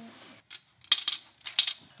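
Plastic Connect Four discs clicking and clattering as they are dropped into the upright grid: a handful of short, sharp clicks over the second half.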